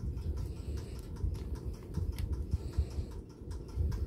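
Small irregular clicks and taps of long fingernails on a plastic gel polish bottle as it is handled and its brush cap is twisted off, over a low steady rumble.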